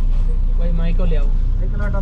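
Steady low engine rumble inside a stationary bus whose engine is idling, with voices talking over it.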